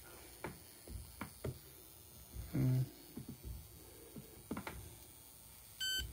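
A USB NFC reader gives one short high beep near the end as it reads the chip implanted in a hand, the sign that the chip still works after the high-voltage test. Before it come light handling clicks and knocks and a brief low murmur of a man's voice.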